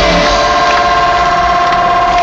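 Loud live concert music over the stadium sound system: the bass beat drops out and a steady, held electronic chord sustains in a break.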